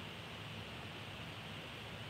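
Steady faint hiss of room tone and microphone noise, with a low hum underneath; nothing else happens.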